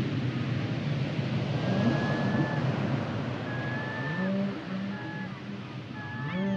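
Whale song over a steady wash of surf: long drawn-out moans with higher held whistles, and a low moan that rises and then holds steady about four seconds in.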